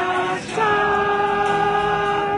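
A small group singing a Christian song together to an acoustic guitar, holding long notes; one note ends and a new held note begins about half a second in.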